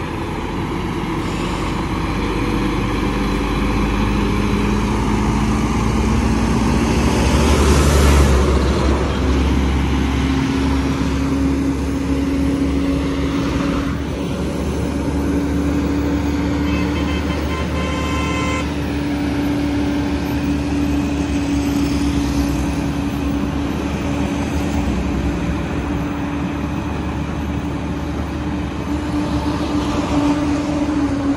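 Volvo FM 400 heavy-haul truck's diesel engine droning at crawling speed under a heavy trailer load, loudest about eight seconds in as it passes, with its engine note stepping up in pitch just after. A brief higher-pitched tone sounds near the middle.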